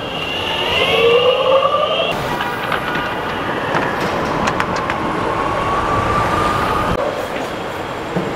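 Boosted electric skateboard's motor and drive belts whining, rising in pitch as the board speeds up, over the rumble of its wheels on the ground. Later a steadier whine climbs slowly, with a few sharp clicks.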